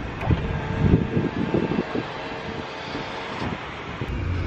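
A vehicle engine running close by, with a few knocks from the camera being handled and turned.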